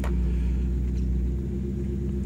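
A steady low mechanical hum with a constant drone, and a single click right at the start.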